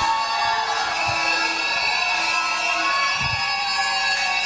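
Background music of steady, held tones sustained at an even level, with two soft low thumps about a second in and again past the three-second mark.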